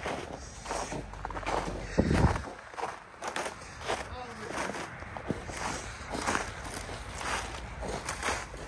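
Footsteps on snow and dry brush: a series of steps, roughly one every half second to second, as someone walks along the fence line.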